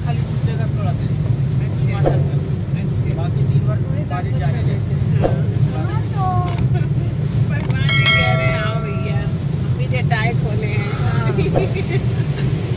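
Steady low rumble of a car cabin driving on a wet road in heavy rain. About eight seconds in, a bell-like chime rings for a second or so.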